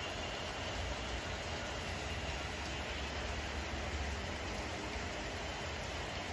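Steady rain heard from inside a room: an even hiss with a low rumble underneath.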